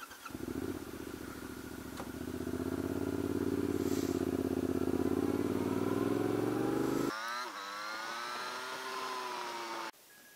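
Motorcycle engine running as the bike rides along at about 27 mph, the revs building over the first few seconds and then holding steady. About seven seconds in the sound changes abruptly to a smoother, higher note that slowly falls, then cuts off suddenly at the end.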